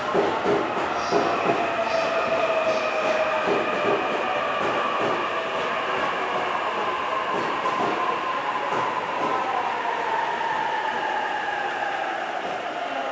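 A JR East E531-series electric train pulling into a station platform and braking. The whine of its inverter motor drive falls slowly and steadily in pitch over the rolling noise of its wheels on the rails.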